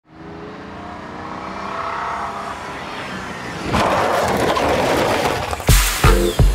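Opening of an electronic techno track: a wavering pitched drone fades in and swells, a loud noisy rush cuts in a little before four seconds, and a heavy kick drum comes in just before the end.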